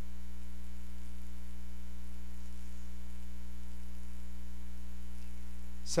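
Steady low electrical hum, mains hum in the recording, holding at one level and pitch throughout with nothing else over it.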